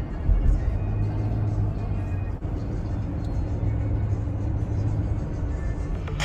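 Steady low road and engine rumble inside the cabin of a moving car.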